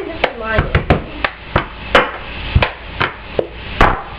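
A plastic cup knocked and slapped on a table by hand, about a dozen sharp knocks at uneven spacing, the loudest about two seconds in and again near the end.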